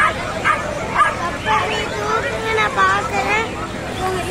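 Small pet animals making short, rapid high calls, several a second, over people talking at a crowded exhibition stall.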